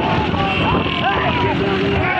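Motorcycle engines running at speed with wind buffeting the microphone, and men shouting and whooping over the noise.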